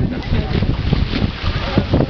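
Wind buffeting the microphone in a steady rumble, with scattered voices of people shouting on the shore.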